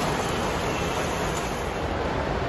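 Model trains running on metal track, a steady rumble mixed into the even din of a large, busy exhibition hall.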